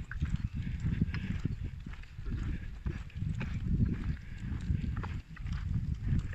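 Footsteps and a pushchair's hard wheels rolling over an asphalt road, giving an uneven clatter of small clicks over a low rumble.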